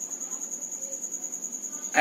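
An insect trilling: one steady high-pitched tone that pulses about ten times a second, over faint room noise.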